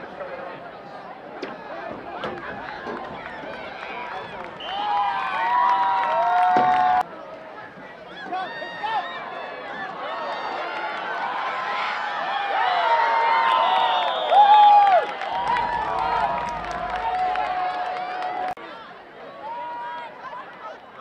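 A crowd shouting and cheering, with many high voices calling out over one another. It swells twice and breaks off abruptly, once about seven seconds in and again shortly before the end.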